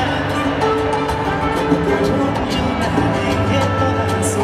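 A live salsa band playing, with held chords over a steady percussion beat.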